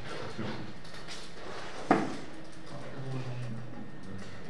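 A single sharp knock about two seconds in, the loudest sound here, against faint background voices.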